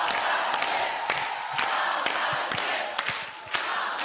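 A studio audience cheering and applauding: a steady wash of many clapping hands and crowd shouts.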